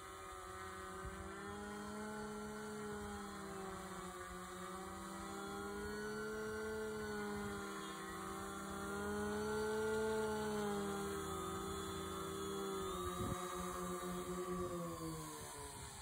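Fan-boat drone's air propeller and motor buzzing steadily. Its pitch slowly rises and falls as the throttle changes.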